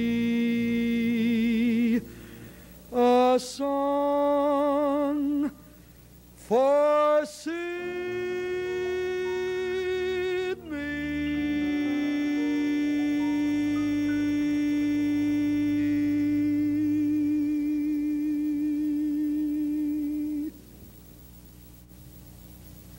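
Male jazz singer holding the final notes of a ballad with vibrato, swooping up in pitch twice before one long held note of about ten seconds that stops shortly before the end. A small jazz trio plays quietly underneath.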